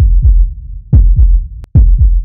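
Dramatic background-score sound effect: three deep, heavy bass booms about a second apart, each sliding down in pitch, like a slow, loud heartbeat.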